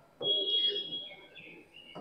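Faint bird chirping: one held high whistle, then a few shorter, wavering chirps.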